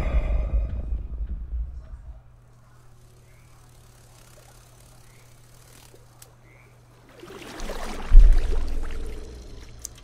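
Horror film soundtrack: dark low music fades out over the first two seconds, leaving a faint low hum, then a deep boom about eight seconds in that swells up and trails off.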